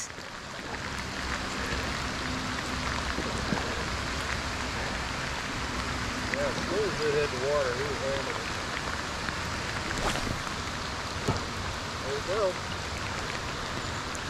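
Heavy rain falling on a river's surface, a steady hiss. A distant voice is briefly heard about six seconds in and again near the end.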